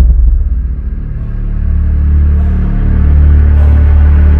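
Low, steady rumbling drone of dark background music, starting with a deep hit.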